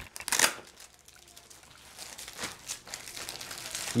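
Clear plastic air-column packaging crinkling as the boxed camera inside is handled and set down: a brief crinkle just after the start, a quieter pause, then more irregular crinkling through the second half.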